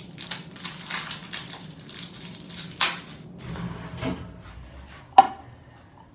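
Crinkly plastic packaging rustling and crackling as it is worked at and pulled open by hand, with a sharp click about three seconds in. A single hard knock with a brief ring comes near the end.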